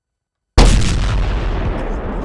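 An explosion-style boom sound effect: a sudden loud blast about half a second in, after dead silence, followed by a long rumbling tail that fades slowly.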